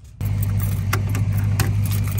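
An engine idling steadily with a low hum, while keys jingle and click a few times in a truck's cab door lock as it is locked.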